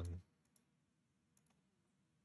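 A few faint computer mouse clicks in near silence, one about half a second in and a couple more just under a second and a half in.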